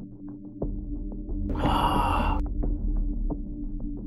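Film background score: a low steady drone with a soft ticking pulse about four times a second, deepening about half a second in. A loud, bright burst of sound lasting about a second comes near the middle.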